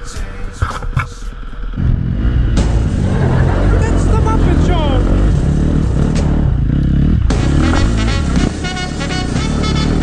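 Dirt bike engine running as the bike is ridden, loud from about two seconds in, with music mixed over it.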